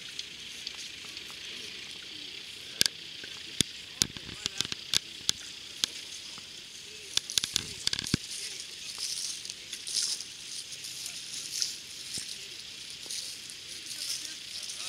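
Outdoor field ambience: faint distant voices over a steady hiss, with a run of sharp clicks and knocks from about three to eight seconds in.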